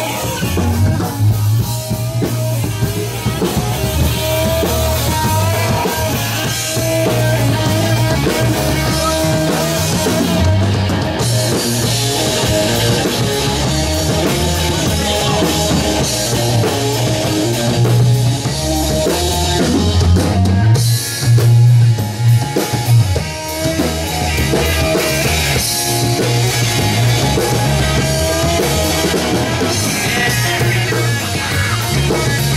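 Live rock band playing: electric guitar, bass guitar and drum kit, with a strong bass line and a steady drum beat.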